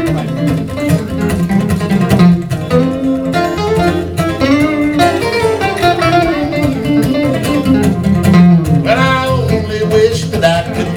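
Electric and acoustic guitars playing an instrumental break in a country song: a lead line with bending notes over the steady rhythm of the other guitar.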